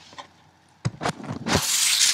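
Handling noise on the recording device: two light knocks, then a loud rustling rub as a hand or sleeve comes up against the camera.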